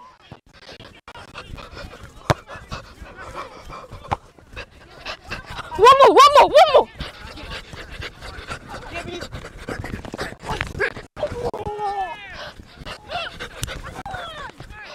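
Shouting voices on a football pitch, with a loud burst of several short shouts about six seconds in and more calls near the end. A single sharp knock sounds about two seconds in.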